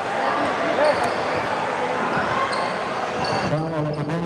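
Basketball being dribbled on a hard court, with spectators' voices chattering throughout.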